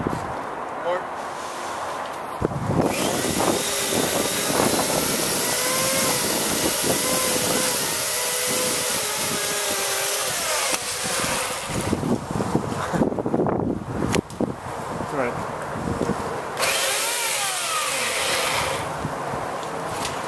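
Small chainsaw running and cutting a tree branch, starting a few seconds in, pausing about two-thirds of the way through, then running again in a shorter second burst.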